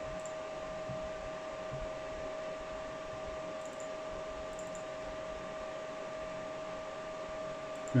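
Steady whirring hum of a running GPU mining rig's cooling fans, with a constant whine riding over the fan noise, and a couple of faint mouse clicks around the middle.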